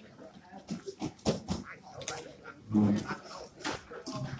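Dining-hall background of scattered knocks and clatter and murmuring voices, with one short, louder call about three seconds in.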